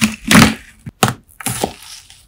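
A knife cutting through a wax-coated, slime-soaked melamine sponge, the crisp coating breaking with a loud crunch, then a sharp crack about a second in and smaller crackles after it. Picked up by a phone's built-in microphone.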